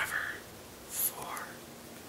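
A man's soft, whispered speech, in a few short breathy bursts.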